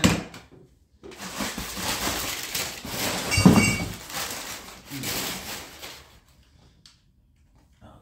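Brown paper packing crinkling and rustling for about five seconds as it is pulled off and unwrapped by hand, loudest in the middle. A short knock right at the start, as a metal tube is set down on a wooden table.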